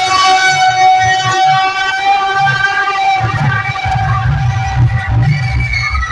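Loud music played through a truck-mounted DJ sound system of stacked loudspeaker cabinets: a long held melodic note, with heavy bass coming in about halfway through.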